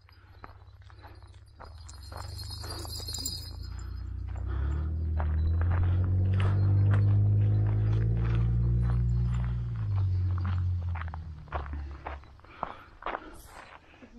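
Footsteps on a road, a steady run of short scuffs and taps. A low humming rumble swells from about four seconds in, is loudest in the middle and fades away a few seconds later.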